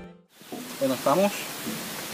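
Background music fading out, then a man's voice speaking over a steady hiss.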